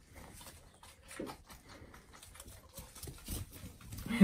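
Faint scattered taps and light knocks from young animals moving about while being bottle-fed, with a soft thump about a second in and another a little past three seconds.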